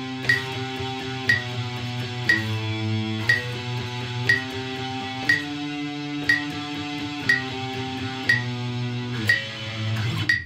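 Electric guitar strumming chords in a steady sixteenth-note pattern at a slow practice tempo, the chord changing every second or two. A sharp click sounds once a second throughout, like a metronome at 60 beats a minute.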